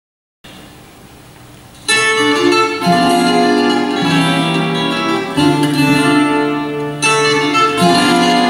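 A small ensemble of plucked strings, an Azorean viola da terra with acoustic guitars, starts playing a traditional Portuguese vira about two seconds in, after a moment of faint hall noise.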